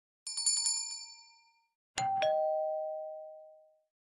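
A bell rung rapidly, a quick run of bright metallic strikes that fades out within about a second and a half. Then a two-note ding-dong chime like a doorbell, the second note lower, ringing on for a couple of seconds as it dies away.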